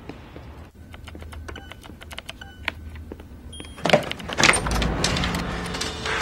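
Clicking of computer keyboard typing with a few short electronic beeps, then about four seconds in a sudden loud crash with a low thud.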